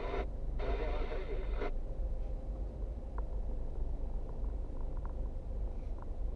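Steady low rumble of a car's engine and tyres inside the cabin, picked up by a dashcam while the car drives slowly, with a few faint ticks near the middle.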